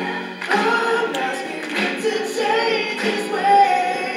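Music: several voices singing together.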